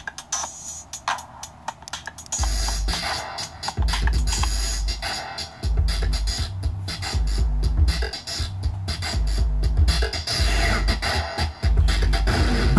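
A TR-808-style drum-machine loop programmed in the DM1 iPhone app, at first light and clicky. About two seconds in it becomes a much louder version with heavy bass: the loop run through an Elektron Analog Heat and effects pedals.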